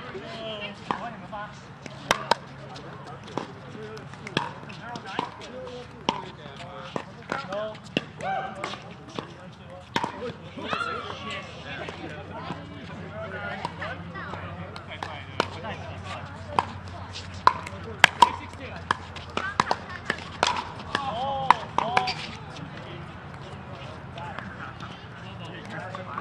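Pickleball paddles striking plastic balls: many sharp, short pops at irregular intervals from rallies on the courts. The loudest pair comes about two-thirds of the way in.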